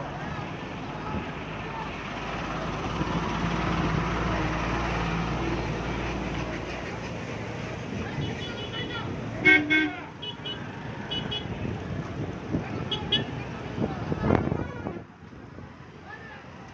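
Road traffic on a bridge: the rumble of a passing vehicle swells and fades over the first half, then vehicle horns give several short toots, the loudest about halfway through.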